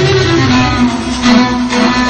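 Instrumental introduction to a Turkish song: a melody of long held notes over a steady, pulsing bass line, with string instruments.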